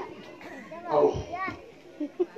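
Background voices of children and other people talking and calling, one voice louder about a second in, with a brief low thump just after it.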